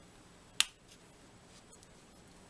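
A single sharp click a little over half a second in, from hands pressing paper hearts onto a card; otherwise only faint paper handling.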